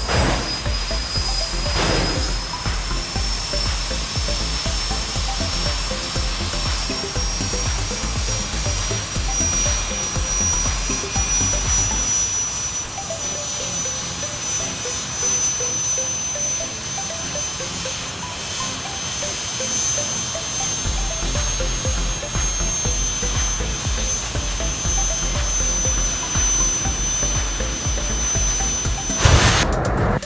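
Jet dragsters' turbine engines running at the starting line: a dense, steady rush with a high whine that creeps slowly upward in pitch. Just before the end the engines surge loudly as they throttle up toward the launch.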